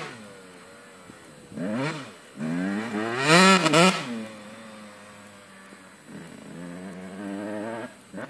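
Small motorcycle engine revving up and down in repeated bursts, its pitch rising and falling, loudest about three to four seconds in, with a lower steady run between bursts.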